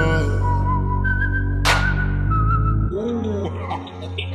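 Slowed, reverb-heavy hip-hop track: a whistled melody over a held low bass, with a bright sweeping swell about a second and a half in. Near the end the bass drops away and gliding vocal sounds begin.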